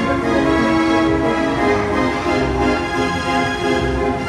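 Carousel music, fairground organ in style, playing steadily as the galloper ride turns, with held chords over a moving bass line.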